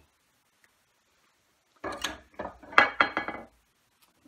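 Hand tools being handled and set down: a quick cluster of metal clinks and wooden knocks, some ringing briefly, starting about two seconds in and lasting under two seconds.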